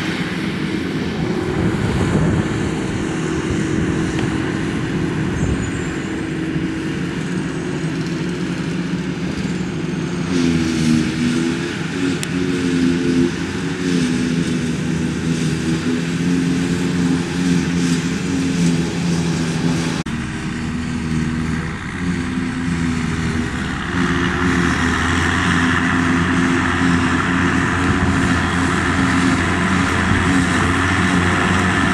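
Claas Jaguar 820 self-propelled forage harvester working under load, its engine and chopping gear giving a steady drone that briefly dips and recovers in pitch about ten seconds in. A tractor hauling the silage trailer runs alongside, and the sound steps up a little louder about three-quarters of the way through.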